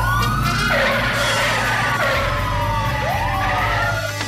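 Police siren wailing, its pitch sweeping up sharply and sliding slowly back down, three or four times, over background music.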